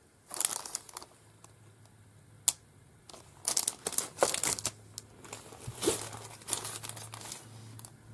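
Crinkling and rustling of plastic-wrapped sticker packs and sticker sheets being handled, in irregular bursts, with one sharp click about two and a half seconds in.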